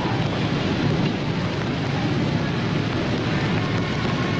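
A steady rumbling noise, heaviest in the low end, with no distinct events.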